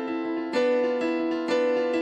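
Solo piano played on a digital keyboard: sustained chords struck about once a second in a slow march, an original cinematic piece.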